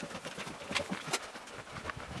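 A few sharp clicks and knocks at irregular spacing over faint room noise.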